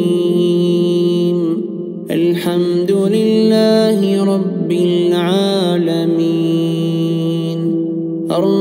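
A man's voice reciting the Quran in a slow, melodic chant, drawing each syllable out into long held notes that bend in pitch. There are short breaths between phrases, about two seconds in, halfway through and near the end.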